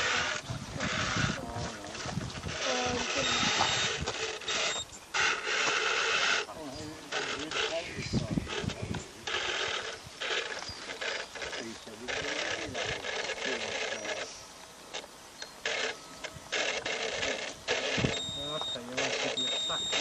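Indistinct voices talking close by, mixed with repeated short knocks and scrapes as an electric RC rock crawler climbs and scrabbles over a boulder.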